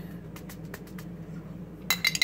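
A metal spoon clinking against a glass sauce jar: a few faint taps, then a quick run of sharp, ringing clinks near the end.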